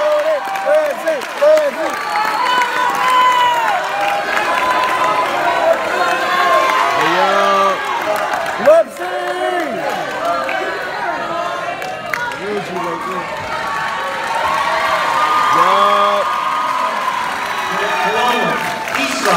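A large crowd cheering and shouting, many voices over one another, with some clapping. A single sharp thump about nine seconds in.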